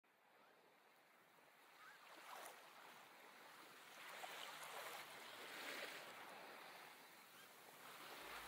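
Near silence: a faint, even hiss that slowly grows a little louder.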